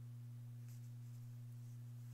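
A steady low hum runs throughout. Over it come two faint, short rasps of embroidery floss being drawn through the hooped fabric, one under a second in and one near the end.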